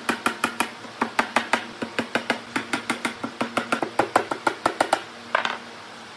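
Claw hammer tapping small nails into a wooden beam: a rapid run of light, sharp blows, about five or six a second, that stops about five seconds in, followed by a brief clatter.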